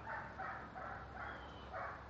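A dog barking, a quick run of about five short barks.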